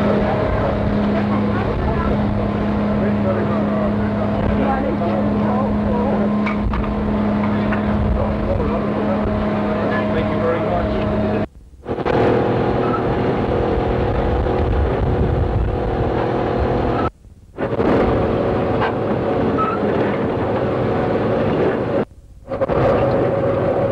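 Steady machinery hum with a noisy background and indistinct voices. The sound drops out for a moment twice, about 11 and 17 seconds in, and the hum changes pitch after the first dropout.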